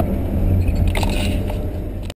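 Pontiac Trans Am's LT1 5.7 L V8 with long-tube headers and aftermarket exhaust, running with a steady low drone as heard from inside the cabin. A brief higher-pitched noise comes about a second in.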